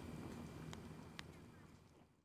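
Wood fire burning faintly, with a few sharp crackles, fading out near the end.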